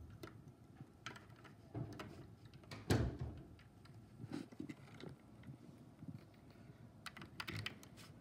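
Irregular light plastic clicks and taps of Lego pieces being handled, with one louder knock about three seconds in and a quick run of clicks near the end.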